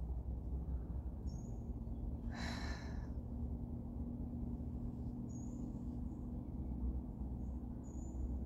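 A woman sighs once, a single breath out about two and a half seconds in, over a steady low hum in a car cabin. Faint high chirps come a few times.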